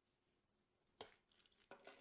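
Near silence for about a second, then a sharp tap followed by light scraping and paper rustling: a round metal tin, used as a circle template, being lifted off the paper and set down on the wooden table.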